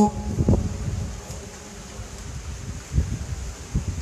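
A pause between a man's phrases into a microphone: low, even outdoor background noise with a few short, soft low thumps.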